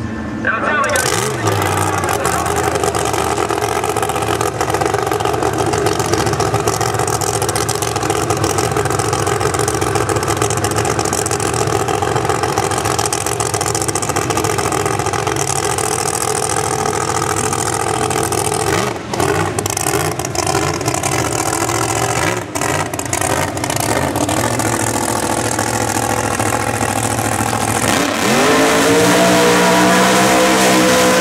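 Supercharged V8 drag-car engine starting about half a second in, then running steadily at idle. Near the end the engine revs up, rising in pitch, as the car goes into its burnout.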